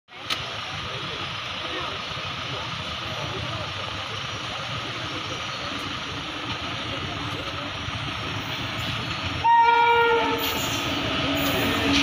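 Indian Railways electric locomotive sounding its horn once, a single steady blast of about a second, loud, about three-quarters of the way through. Beneath and after it, the rumble of the approaching passenger train grows louder as it nears.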